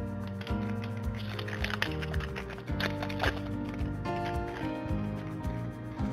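Background music with sustained notes and a light beat.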